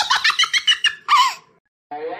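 High-pitched giggling: a quick run of short laughing notes that cuts off about a second and a half in.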